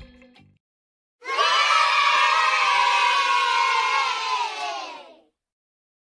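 A crowd of children cheering and shouting for about four seconds, starting about a second in and cutting off abruptly.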